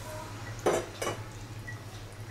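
A utensil knocking twice against a metal cooking pan, the two clinks a little under half a second apart near the middle, over a faint steady low hum.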